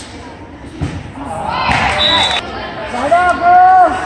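Volleyball rally sounds in a gym hall: a ball strike thuds about a second in, then players and spectators shout. A referee's whistle blows briefly about halfway through. Near the end a long, high shout is the loudest sound.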